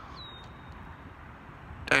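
Quiet outdoor ambience: a faint, steady background hiss, with a brief thin high whistle just after the start. A man's voice comes in at the very end.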